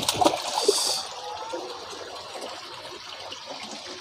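Pond water splashing and sloshing for about the first second, then a steady quieter trickle of running water.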